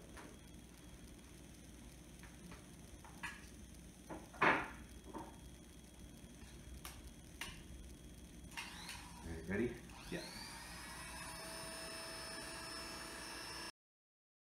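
Scattered clicks and knocks of hair clippers and attachments being handled on a hard counter, the loudest about four and a half seconds in. About ten seconds in, corded electric hair clippers switch on and run with a steady hum until the sound stops abruptly near the end.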